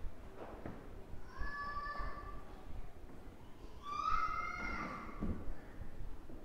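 A toddler's high-pitched squealing calls: two drawn-out, level-pitched squeals, one about a second and a half in and a louder one about four seconds in.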